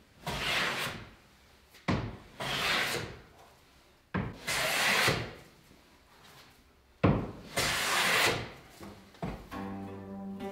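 Hand plane taking four long strokes along a hardwood board. Each stroke starts with a knock as the plane lands on the wood, followed by about a second of shearing hiss as the blade cuts a shaving.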